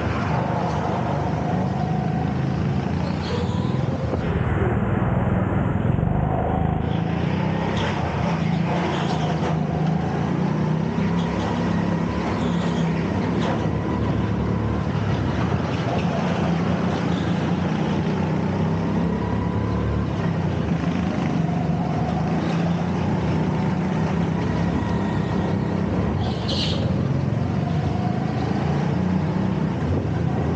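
Go-kart engine heard onboard, running steadily at racing speed, its pitch rising and falling gently through the corners. There is a brief high-pitched squeal near the end.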